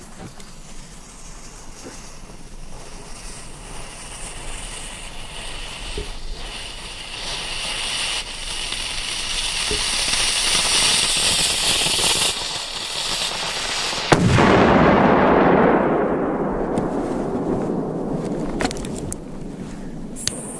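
A large firecracker's burning fuse hisses and fizzes for about twelve seconds, growing louder, then stops. About two seconds later the firecracker goes off in one loud bang, followed by a long rumbling echo that fades over several seconds.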